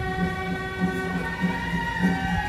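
Temple-procession music: several long, overlapping horn-like notes held over a steady drum beat of about three strokes a second.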